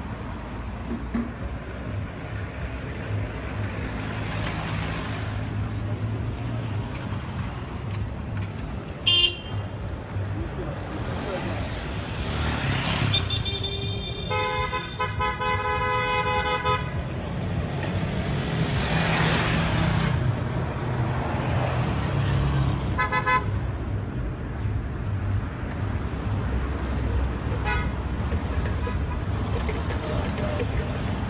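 Street traffic: vehicles passing close by with engine rumble and tyre noise, and a car horn held for about two and a half seconds around the middle. Short horn toots come later, near the end.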